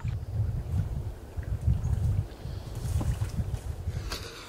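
Wind buffeting the microphone: an uneven low rumble that swells and dips.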